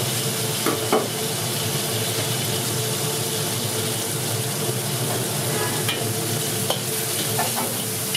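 Peas and chopped vegetables frying and sizzling in a large wok, with a steady hiss, while a metal ladle stirs them and clinks or scrapes against the pan a few times.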